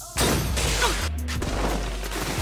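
Anime sound effect of a sniper-rifle energy shot: a sudden loud rushing blast that begins just after the start and fades slowly with a low rumble, over background music.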